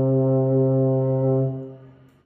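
A euphonium holding one long low note, which fades away about a second and a half in.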